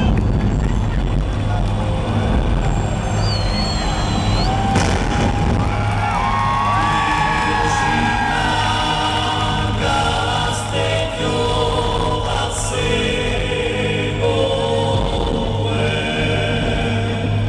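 Live concert music of a choir chanting over a steady low drone, heard through a phone-style recording from the arena audience. A brief high whistle comes about three seconds in.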